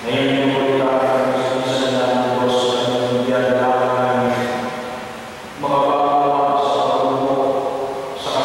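A priest chanting a liturgical prayer of the Mass on a steady reciting note: one long phrase, then a second, slightly higher phrase beginning about five and a half seconds in.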